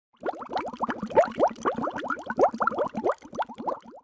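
Bubbling water sound effect: a rapid, uneven stream of short rising bubble sounds that stops abruptly.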